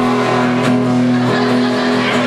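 Acoustic guitar strummed, a chord ringing on and struck again about two-thirds of a second in and a little over a second in.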